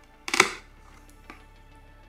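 A single short rustling snap from the cardboard front flap of a collectible's window box as it is pulled open, about half a second in, over faint background music.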